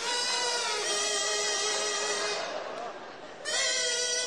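A woman's mouth-made, instrument-like melody: sustained, wavering pitched notes that change in steps like a tune, with a breathy hiss and a dip in level for about a second before the notes resume near the end.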